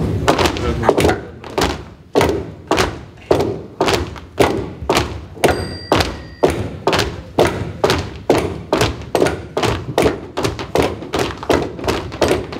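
Wooden walking sticks and crutches knocked on a wooden floor in a steady rhythm, about two to three knocks a second.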